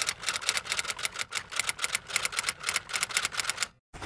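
Typewriter keys clacking in a fast, uneven run of about seven strokes a second, stopping suddenly near the end.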